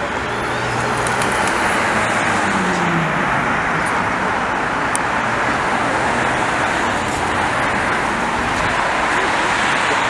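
Steady city road traffic: cars driving past with a continuous rush of engine and tyre noise.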